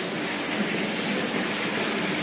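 Steady rush of running water circulating through goldfish tanks.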